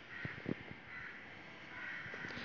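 Crows cawing faintly, a run of short caws about a second apart, with a light knock about half a second in.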